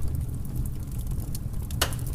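A steady low rumble with faint, scattered crackles, and one short, sharp burst of noise near the end.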